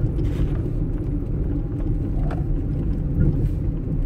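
Inside a moving car's cabin: a steady low rumble of engine and tyres on the road.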